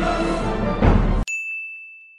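Dramatic orchestral background music stops abruptly just over a second in. A single high ding follows, ringing out and fading away.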